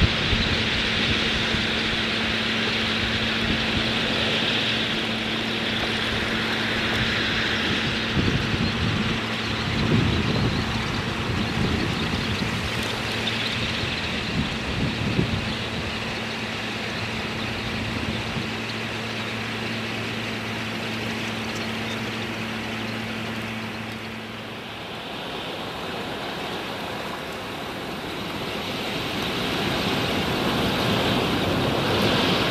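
A huge flock of shorebirds in flight low over the water: a steady rushing noise of massed wings and birds, with wind bumping the microphone a few times about a third of the way in and a faint low hum underneath that stops near the end.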